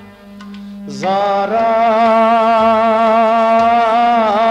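Kashmiri song: a singer rises into a long held note with vibrato about a second in, over a steady drone.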